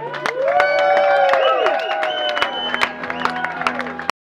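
Audience cheering and clapping at the end of a live acoustic song, with long shouts from several voices over scattered hand claps and a chord still ringing underneath.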